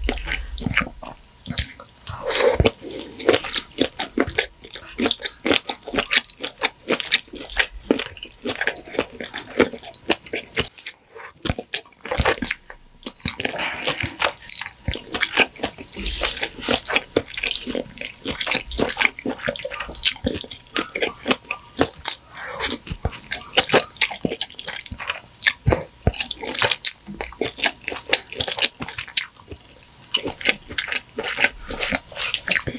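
Close-miked wet chewing and mouth smacks of someone eating creamy shrimp fettuccine alfredo: many quick, irregular sticky clicks, with a brief pause about eleven seconds in.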